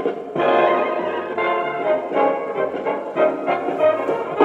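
Music played back loudly from a 50-year-old tape on a 1960s Cambridge (Pye/Philips) 9106 transistor reel-to-reel tape recorder, heard through its built-in speaker with a warm, mellow sound.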